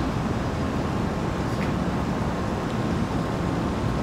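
Steady room noise of an air-conditioned auditorium: an even, low rumble with no other event standing out.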